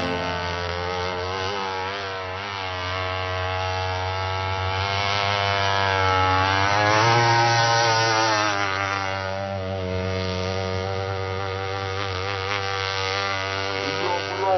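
Chainsaw-derived two-stroke engine of an RC powerboat running at high speed, its pitch wavering; it grows loudest about seven seconds in as the boat passes close, then falls back as the boat runs away.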